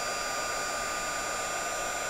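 Embossing heat tool running steadily, blowing hot air over white embossing powder to melt it.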